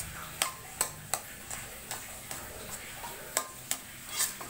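Metal spatula tapping and scraping against a wok while stirring fried rice, giving about eight sharp, irregularly spaced clicks.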